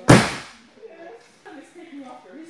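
Aikido breakfall at the landing of a koshinage hip throw: uke's body and arm hit the mat in one sharp, loud slap just after the start, dying away within half a second.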